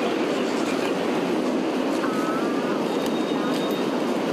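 Steady rushing noise of a wildfire burning through hillside eucalyptus and dry vegetation, constant in level, with no clear rhythm.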